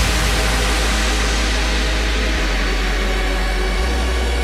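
Hard house / happy hardcore breakdown with no drum beat: a steady synth noise wash over a held deep bass note that steps to a new pitch twice.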